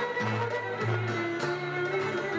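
Traditional Thracian folk music played live: a fiddle playing a sustained melody over plucked lute accompaniment, with a moving bass line changing note about every half second.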